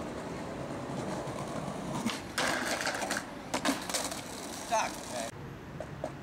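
Skateboard wheels rolling over stone in two stretches, with a few sharp clicks, cutting off suddenly about five seconds in.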